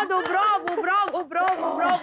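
Speech: a high-pitched voice talking animatedly, with a few sharp hand claps.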